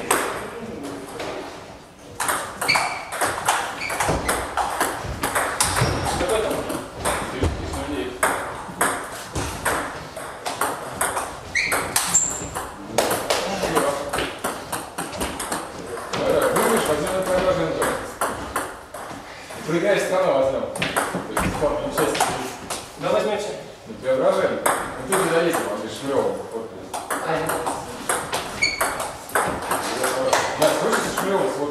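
Table tennis balls clicking off bats and table tops in quick rallies, many sharp hits, with voices talking in the background.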